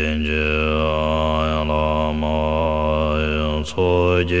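Deep-voiced Tibetan Buddhist chanting of a prayer to Guru Rinpoche: one long, low held note whose vowel sound slowly shifts. A short breath break comes just before the end, and then the chant resumes.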